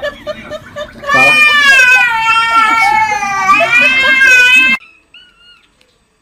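A long, high, wavering animal cry, about three and a half seconds long, starting about a second in and cut off suddenly. A few faint short squeaks follow.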